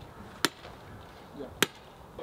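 Two sledgehammer strikes about a second apart, sharp and sudden, driving a grounding rod into the ground beside an electrical service post.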